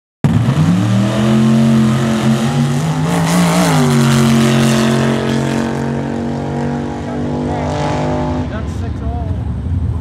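Drag car's engine at full throttle down the strip: its note climbs at the launch, holds, rises and then drops once about three and a half seconds in, and runs on until it fades out about a second and a half before the end. Voices are heard as it fades.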